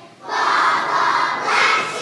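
A large group of kindergarten children singing together, loud and close to shouting. After a brief gap at the very start, the voices come back in.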